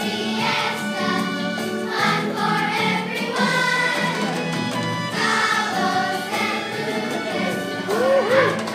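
A children's choir singing a song over instrumental accompaniment.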